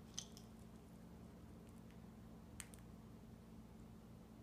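Near silence over a low steady room hum, with a few faint sharp clicks from a parrot feeding from a bowl: a small cluster just after the start and a pair a little past halfway.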